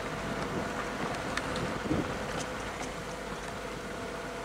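Steady engine and road noise from inside a slowly moving car, with a faint steady hum.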